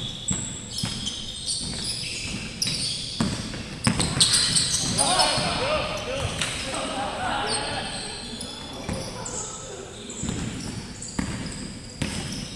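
Basketball bouncing on a hardwood gym floor amid players' shoes squeaking and shouted calls, in a large sports hall. The shouting is loudest a few seconds in.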